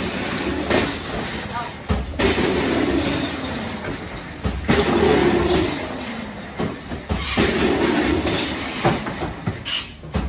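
Cardboard cases of liquid cleaner set down one after another on a metal roller conveyor and rolling along its rollers: a rattling rumble broken by a sharp thud each time a box lands, several times over.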